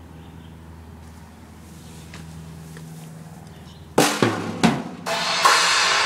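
A drum kit being played: about four seconds in come a few sharp drum strokes, followed by a loud crash that rings on.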